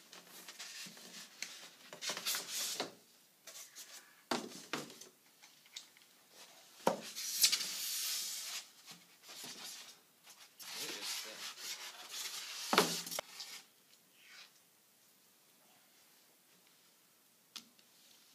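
Foam packing inserts and cardboard rubbing and scraping as an iMac is pulled out of its box, in several noisy stretches with three sharp knocks. It goes quiet over the last few seconds.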